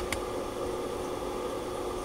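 Steady background hiss with a faint constant hum, and two light clicks right at the start.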